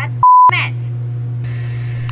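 A single electronic beep, a steady pure tone lasting about a quarter second, with all other sound cut out while it plays. It is followed by a steady low hum.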